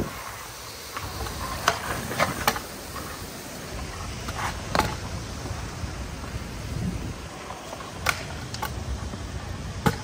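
Stunt scooter wheels rolling on concrete paving, a steady low rumble with wind on the microphone. Several sharp clacks come through it.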